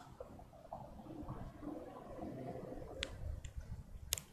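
Faint low background rumble with two short sharp clicks about three seconds in, roughly half a second apart.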